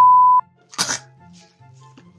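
A loud, steady 1 kHz test-tone beep of about half a second, the tone that goes with television colour bars, cut off sharply, followed about three-quarters of a second in by a short, sharp noisy burst. A faint background music bed runs underneath.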